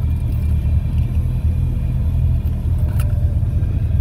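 2009 Chevrolet Corvette's 6.2-litre V8 idling steadily, heard from inside the cabin as a low rumble.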